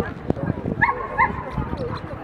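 Chatter of people with a dog giving two short, high yips a little under a second in.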